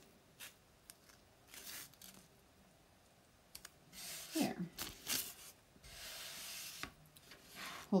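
Hands rubbing and sliding a silk-screen stencil flat over a wooden sign board: short soft swishes with a few light clicks, and one longer smoothing stroke past the middle.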